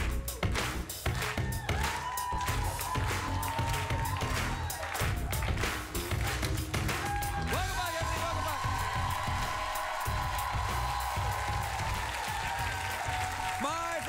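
Live band music with a steady beat; from about halfway, audience applause joins it over a held, melodic line.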